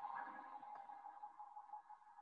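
Faint electronic ringing tone made of several steady pitches at once, starting just before and slowly fading away.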